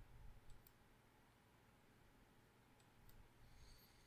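Near silence with faint computer mouse clicks, two near the start and two about three seconds in, as the chart replay is stepped forward.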